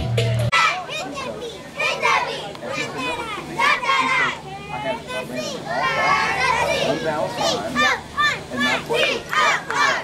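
Many children's high voices calling and shouting over one another, with sideline crowd noise.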